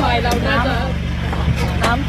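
A motor vehicle engine idling with a steady low hum beneath speech.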